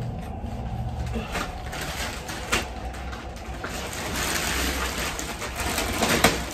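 Plastic mailing bags and a padded paper envelope rustling and crinkling as they are handled and opened, with one sharper click about two and a half seconds in.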